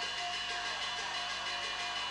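Teochew opera instrumental accompaniment playing long held notes, heard over steady tape hiss.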